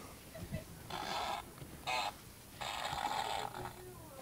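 Electronic fart-noise toy (a 'Dr. Fart' remote fart machine) playing three fart sounds: a short one about a second in, a very brief one, then a longer one. They are thin and buzzy and don't really sound like a fart.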